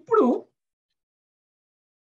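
A man's voice: one short drawn-out syllable with a bending pitch in the first half second, then dead silence.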